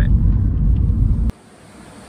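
Loud, steady low rumble from a bicycle on an indoor trainer being pedalled hard, which cuts off suddenly about a second and a half in.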